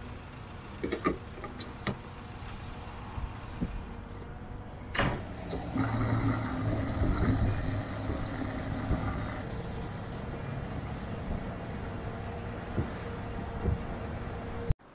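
Diesel pump nozzle being handled, with a few clacks early on and a sharp clunk about five seconds in as it goes into the car's filler neck. Fuel then rushes into the tank with the pump humming, loudest for about three seconds before easing to a steadier, quieter hum.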